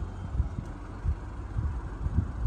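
Low, uneven rumble with irregular soft thumps: wind and handling noise on the microphone.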